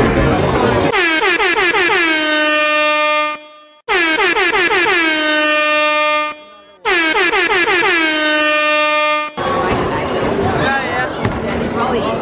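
The 'MLG' air horn meme sound effect, sounding three times in a row. Each blast lasts about two and a half seconds, slurring down in pitch at the start and then holding one loud steady note.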